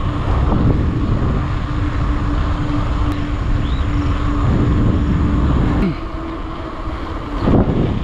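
Wind rushing over the microphone of a camera carried on a moving bicycle, a loud low rumble throughout. Over it a steady hum from a passing motor vehicle holds for the first half, then slides down in pitch about six seconds in as it goes by.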